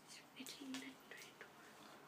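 Faint whispering under the breath, a girl counting quietly to herself, with one brief voiced sound about two-thirds of a second in.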